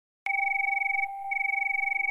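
Electronic tones start suddenly a quarter of a second in: a high steady tone over a lower tone that pulses rapidly. The high tone breaks off for a moment about a second in, then comes back.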